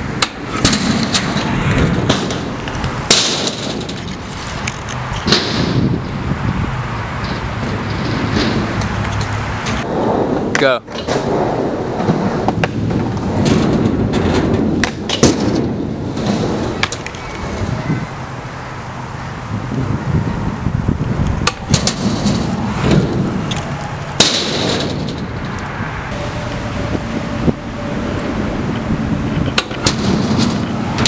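Kick scooter wheels rolling on concrete skatepark ramps, with several sharp clacks of the scooter landing or striking the concrete, the loudest about three seconds in and again near the end.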